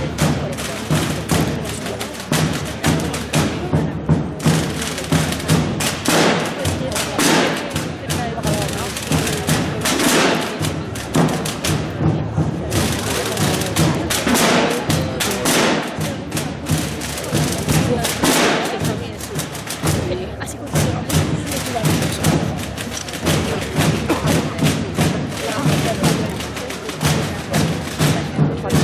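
Holy Week procession drums, rope-tensioned tambores, beaten with repeated strokes by a drum corps, over a murmur of crowd voices.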